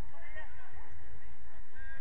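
Distant shouts and calls from footballers on an outdoor pitch, loudest about half a second in, over a steady low rumble.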